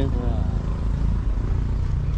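Low, steady rumble of an idling vehicle engine.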